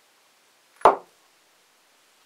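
Cast brass medal knocked once against a wooden tabletop: a single short, sharp knock a little under a second in, with a brief ring.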